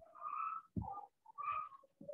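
Three short vocal sounds in quick succession, the words not made out.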